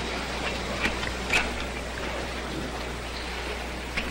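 Steady background hiss with a low hum, broken by a few short clicks about a second in.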